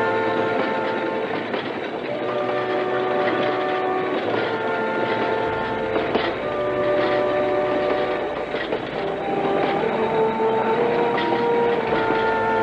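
Train cars rolling slowly past, with a steady rumble and occasional wheel clacks. Over them play slow, held music chords that change every second or two.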